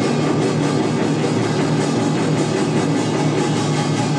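Korean traditional percussion ensemble playing together: janggu hourglass drums struck with sticks, a buk barrel drum and gongs, including a large jing struck with a padded mallet. The playing is dense and continuous, at an even loudness.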